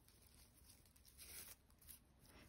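Near silence: room tone, with a faint rustle about one and a half seconds in.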